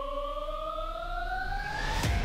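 Synthesized rising-tone sound effect, a riser: one steady electronic tone and a second tone above it climb together in pitch over about two seconds. It starts suddenly as the speech cuts off.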